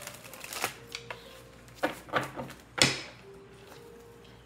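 A deck of tarot cards shuffled by hand: a quick flutter of card clicks at the start, then several separate slaps of cards, the loudest a little before three seconds in.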